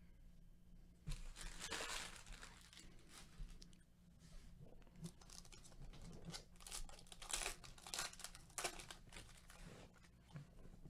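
Foil wrapper of a Panini Legacy football card pack being torn open and crinkled by gloved hands. The tearing and crinkling come in bursts starting about a second in, loudest at first and again near the end.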